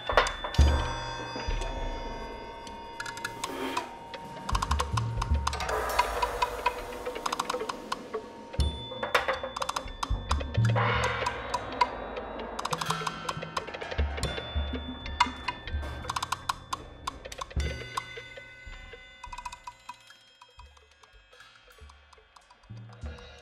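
Free-improvised percussion from a trio of drummers: low drum hits under quick taps and clicks, with ringing tones from small cymbals laid on the drumheads. It thins out and dies away over the last few seconds.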